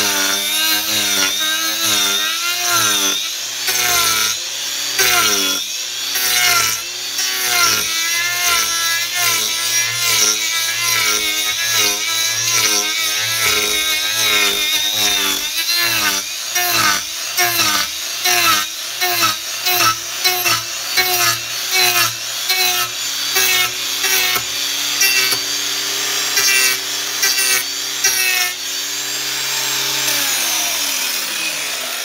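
Cordless angle grinder fitted with an Arbortech TurboPlane carving disc, shaving a fir batten. The motor's pitch dips and recovers again and again as the blade bites into the wood, and the cutting turns choppy, with quick repeated bites, from about halfway. Near the end it runs steadily, free of the wood.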